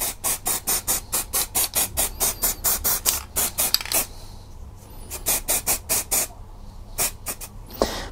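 Aerosol primer spray can fired in rapid short bursts of hiss, about four a second, pausing about four seconds in before a second run and a few single puffs near the end. These are the light, short dabs used to prime a plastic miniature without drips or clogging its detail.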